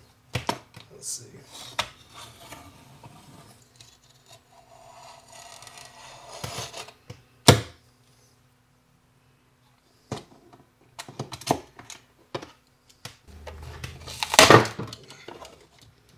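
Hands working at the top plate of a lithium iron phosphate battery: scattered clicks and scrapes, with one sharp click about halfway through. Near the end comes a louder ripping rasp as the 3M adhesive tape holding the plate breaks loose.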